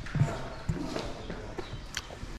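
A few irregular dull thuds over faint background noise.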